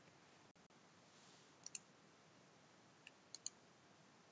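Faint computer mouse clicks over near-silent room hiss: a quick pair about a second and a half in, then three more clicks just after three seconds.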